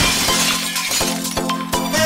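Song's instrumental passage opening with a breaking-glass sound effect, a sudden crash whose glittering hiss fades over about half a second, over a steady beat of drum hits.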